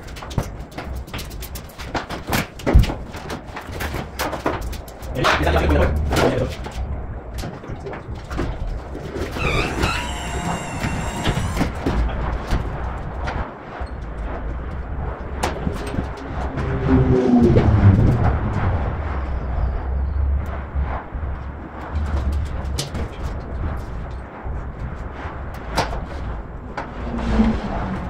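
Workshop disassembly noise: repeated clicks, knocks and clatter of car body parts and tools being handled, with a sharp knock about three seconds in. A wavering high-pitched sound comes about ten seconds in, and a brief falling pitched sound follows a few seconds later.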